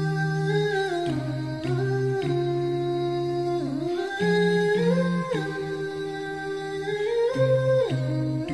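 Background music: a wordless hummed vocal melody in long held notes that slide from one pitch to the next.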